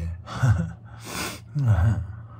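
A man's breathy voice close to the microphone: two short voiced exhalations with falling pitch, and a breathy gasp between them.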